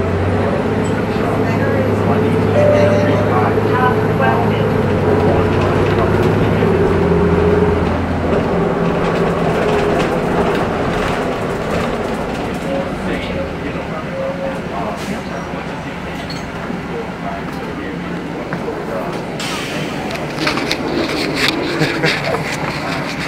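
Interior of a moving city bus: a low engine hum for the first several seconds, then mostly road and cabin rumble, with passengers' voices in the background. Near the end, rustling and knocks from the phone being handled.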